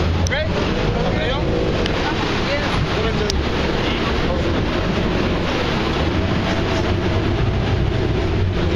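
Speedboat engine running steadily, with wind rushing over the microphone, and a voice faintly heard through the noise in the first few seconds.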